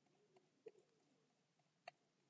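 Near silence with faint bird cooing in the background and two faint clicks, one a little after half a second in and one near the end.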